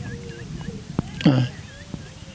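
Faint bird calls: a run of short, repeated whistled notes, with a single sharp click about halfway through.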